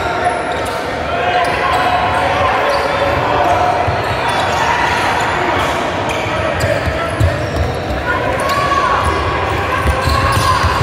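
Basketball bouncing on a hardwood gym floor during play, the dribble thumps coming thicker in the second half. Over it, a large echoing gym full of spectators and coaches shouting and calling out.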